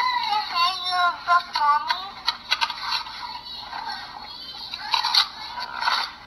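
A toddler's babbling, sing-song voice played back thin and tinny through a recordable storybook's small speaker, followed by a few seconds of crackly hiss and clicks on the recording.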